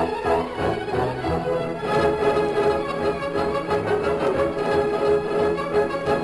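Orchestral music led by strings, moving along over a steady, repeated low pulse.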